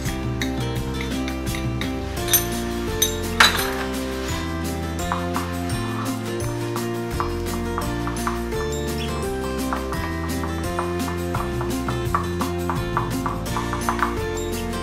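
Background music with steady held notes throughout. Over it, a steel spoon clinks against the bowl as fruit salt is added and the dhokla batter is stirred: a few sharp clinks between two and three and a half seconds in, then a run of lighter taps.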